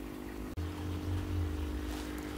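Steady electric motor hum from a Hozelock pond vacuum. A brief dropout comes about a quarter of the way in, after which a low rumble joins the hum.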